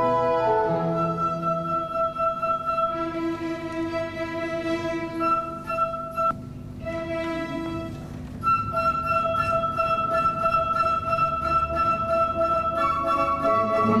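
A small orchestra of strings and flute playing classical music, the flute carrying long held notes over the strings. The music softens briefly about six seconds in, then the flute enters with a long sustained note.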